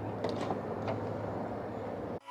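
A few light clicks and knocks of someone climbing into a U-Haul truck's cab, over a steady low hum.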